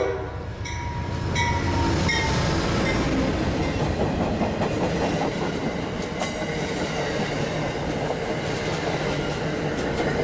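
Amtrak passenger train passing close by. The diesel locomotive goes by as the horn ends at the start, then comes a steady rush of the passenger cars' wheels on the rails with scattered clicks.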